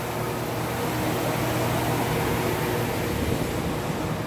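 A steady low mechanical hum with a faint drone, growing a little louder in the middle and easing off again.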